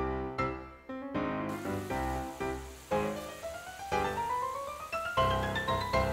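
Light instrumental background music made of separate plucked or struck notes, with runs of notes climbing in pitch in the second half.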